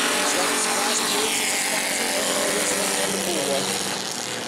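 Engines of several short-track stock cars running at speed around the oval, with the pitch sliding down about three seconds in as a car passes.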